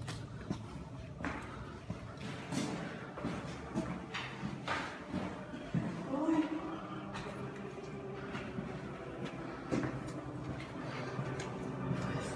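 Indistinct voices with scattered knocks and clicks over a low steady hum.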